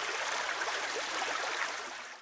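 Steady rush of flowing river water, an even hiss that tapers off slightly at the end.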